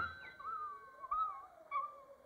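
A cartoon bird character's voice sound effect: a few thin, wavering chirping calls that slide up and down in pitch, fairly quiet.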